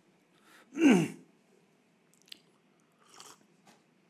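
A man's short vocal sound with a falling pitch about a second in, like a brief 'uh', followed by a few faint mouth clicks and a soft breath during a pause in speaking.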